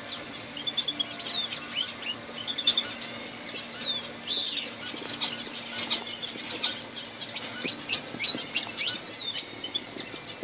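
A mixed flock of aviary finches and canaries chirping and calling continuously, many short, quick, high notes overlapping one another. A faint low steady hum lies underneath and stops about eight seconds in.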